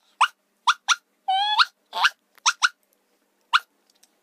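A girl's voice giving a string of short, very high-pitched yips in imitation of a puppy going "woof woof", with one longer rising yelp in the middle and a giggle.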